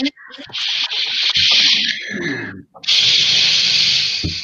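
Loud scratchy rubbing noise on an open video-call microphone, in two stretches with a brief gap between, the first about two seconds long and the second a second and a half.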